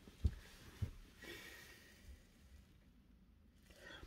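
A quiet pause in a car cabin: two brief soft low thumps in the first second, then a faint breath, over faint hiss.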